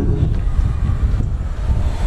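Wind rumbling on the microphone, a steady low noise with no speech over it.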